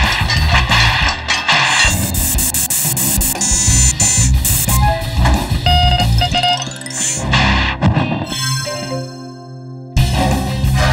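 Guitar-led cartoon background music, with noisy sound-effect bursts mixed in; it drops in loudness near the end.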